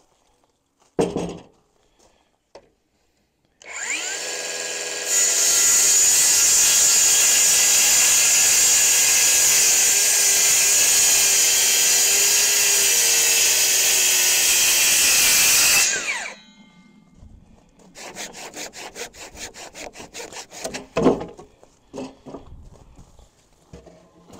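DeWalt cordless circular saw spinning up and crosscutting a wooden timber beam. The loud, steady cut runs for about ten seconds, then the blade winds down. Quieter clattering and knocks follow.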